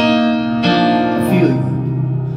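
Electric stage keyboard playing sustained chords in a live solo song, struck at the start and again about half a second later.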